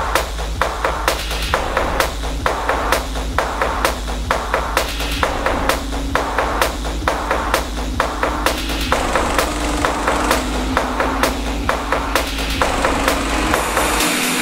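Dark techno in a breakdown with the heavy kick drum out. A low bass rumble runs under a dense run of sharp, clicking percussion and a faint held synth note.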